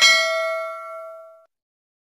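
Notification-bell ding sound effect: one bright chime of several tones ringing together and fading out about a second and a half in.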